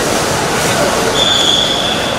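Loud steady rumble and hiss of a train, with a high steady squeal, like wheels or brakes on the rails, starting about a second in and lasting about a second.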